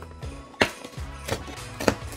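A perforated cardboard flap on a toy box being pried open with a fingernail: a few sharp cracks and tearing clicks as the card gives way, over faint background music.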